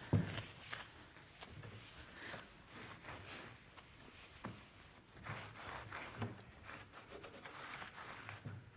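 A lint-free cloth rubbing over the glossy finish of a wooden chest of drawers, drying it after a TSP degreasing wipe: faint, irregular wiping strokes, with one brief thump right at the start.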